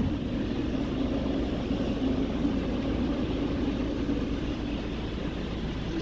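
Honda Civic's engine idling with a steady low hum.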